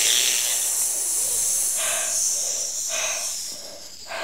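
A loud hissing noise that fades away gradually over about four seconds, with two faint short sounds in it about two and three seconds in.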